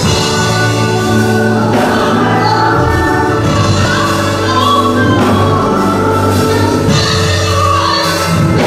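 A woman sings a gospel song into a handheld microphone, with backing voices and musical accompaniment under her.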